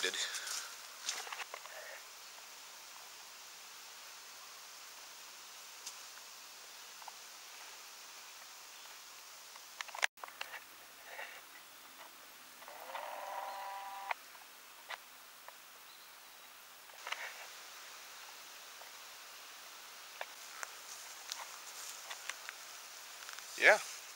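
Quiet outdoor background: a steady faint hiss with a few soft clicks, and a short pitched sound lasting about a second and a half a little over halfway through.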